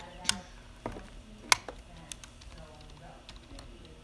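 Computer keyboard being typed on: scattered, irregular key clicks, with two sharper, louder clicks near the start and about a second and a half in.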